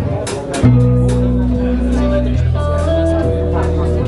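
Live band of electric guitar, electric bass and drum kit playing an instrumental passage. About half a second in, the bass comes in with strong held low notes under the guitar and drum hits.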